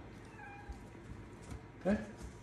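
A cat meowing faintly once: a short call that falls slightly in pitch.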